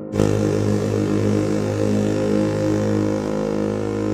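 SS America ship horn sounding one long, deep, steady blast, used as an ice hockey goal horn to signal a goal. The blast starts a fraction of a second in, just after the previous one dies away.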